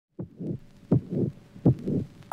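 Heartbeat sound effect: three deep double thumps, each strong beat followed by a softer one, about three-quarters of a second apart.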